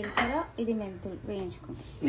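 Steel kitchen plates and utensils clinking at a gas stove, under a voice talking through most of the moment.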